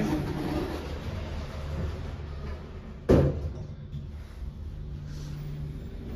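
Elevator doors sliding shut, closing with one sharp thud about three seconds in, over a steady low hum.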